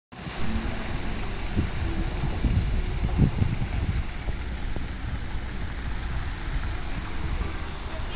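A car driving through shallow floodwater from a burst water main, its tyres splashing, over steady street noise.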